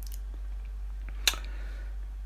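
A single short lip smack a little past a second in, from someone tasting an energy drink, over a steady low electrical hum.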